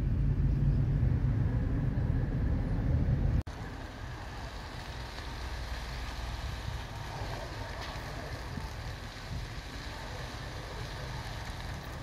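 Low rumble of a car on the move, heard from inside the cabin. About three and a half seconds in it cuts off abruptly to a much quieter, steady outdoor background noise.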